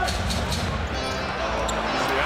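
A basketball being dribbled on a hardwood court during live play, a few sharp bounces over a steady arena rumble, with music playing underneath.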